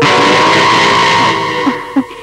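A loud, sudden dramatic sound sting from the film's soundtrack: a harsh noisy blast with steady shrill tones that hits at once, holds, then fades after about a second and a half.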